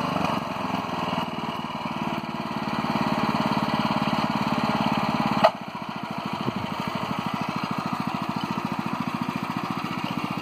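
Small engine of a walk-behind power weeder running steadily while tilling soil. About five and a half seconds in there is a sharp click, and the engine then drops in level and settles into a slower, evenly pulsing beat.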